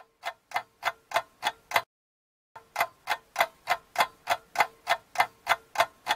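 Clock ticking sound effect, about three sharp ticks a second, stopping for under a second near the middle and then going on again.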